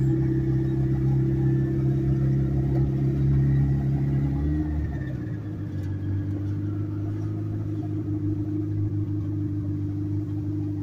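Turbocharged Subaru EJ flat-four engine heard from inside the cabin while driving, a steady drone. About halfway through its pitch drops as the revs fall, and it carries on steadily at the lower note.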